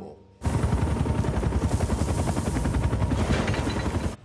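Tracks of a tracked remote-controlled robot clattering over rubble in fast, dense rattles over a low rumble. The sound starts abruptly about half a second in.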